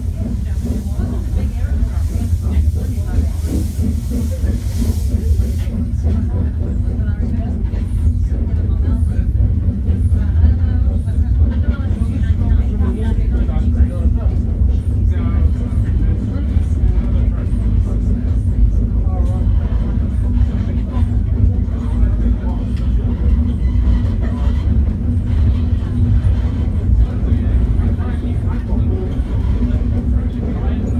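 Snowdon Mountain Railway rack steam locomotive pushing its carriage uphill, heard from inside the carriage: a loud, steady low rumble with a faint regular beat from the working engine. A hiss of steam is mixed in and stops about six seconds in.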